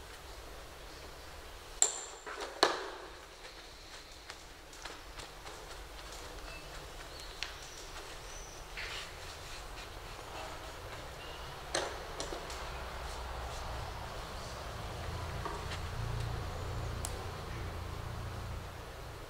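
A few sharp, hard clicks and knocks of painting brushes being put down and picked up at the work table, two close together about two seconds in and another near twelve seconds, over quiet room tone.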